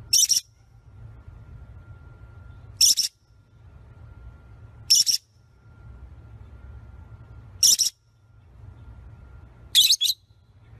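A small parrot giving short, shrill squawks, five of them about two and a half seconds apart, over a low steady hum.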